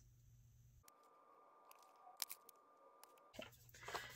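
Near silence, with a few faint taps and a light paper rustle as stickers are pressed onto a planner page and a sticker sheet is picked up near the end.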